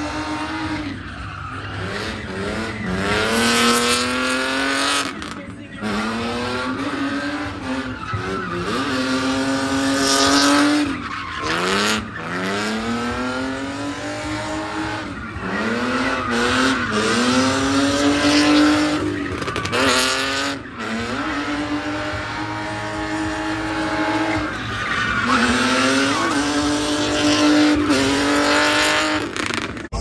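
BMW E36 convertible drift car's engine revving up and dropping back again and again while it slides, with its tyres squealing. The pitch climbs and falls every second or two.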